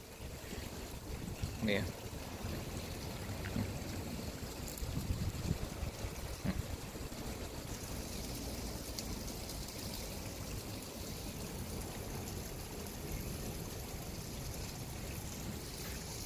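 Steady, even rushing noise with a low rumble underneath, with a short spoken phrase near the start.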